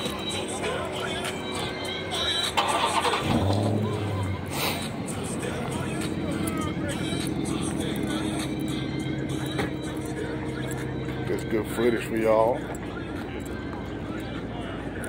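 A car engine running, with music playing and people talking in the background.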